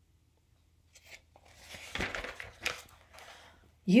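Paper pages of a book rustling and crackling as it is handled and its pages are turned, starting about a second in.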